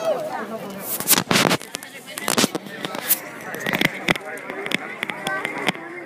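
Crowd chatter with a series of sharp, irregular clicks and pops scattered through it, the loudest cluster about a second in.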